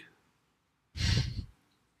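A person's single short, breathy exhale close to the microphone, about half a second long, about a second in.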